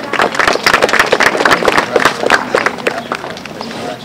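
Audience applauding, a dense patter of hand claps that thins out in the last second.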